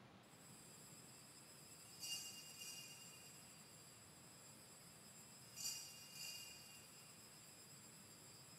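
Small altar bells rung twice, each ring a short double jingle of high bell tones, the rings about three and a half seconds apart, marking the elevation of the chalice just after its consecration.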